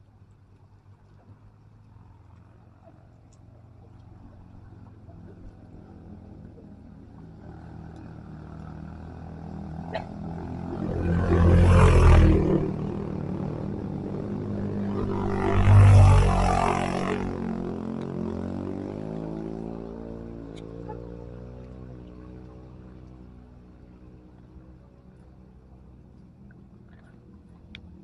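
Motor scooters passing close by: engine sound builds slowly, peaks loudly twice about four seconds apart as they go past, then dies away with falling pitch.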